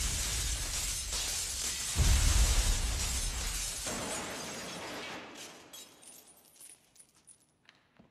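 A heavy crash with shattering about two seconds in, then a long spray of falling debris that fades out into scattered small clinks.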